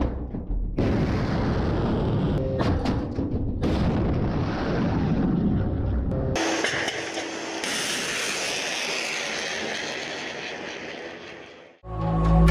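S-400 surface-to-air missile launch: a sudden blast as the missile is thrown from its launch canister, then the rocket motor's loud rushing noise. About six seconds in the sound changes to a thinner hiss with little bass that fades away near the end.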